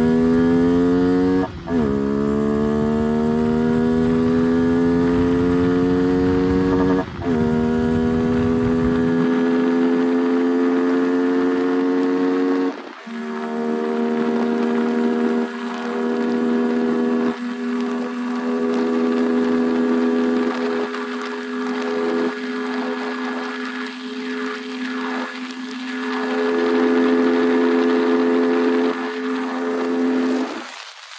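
Yamaha R15 V3's 155 cc single-cylinder engine accelerating hard through the gears, its note rising in each gear and dropping at upshifts about two, seven and thirteen seconds in. Then it holds a steady high note in top gear at cruising speed, with heavy wind noise.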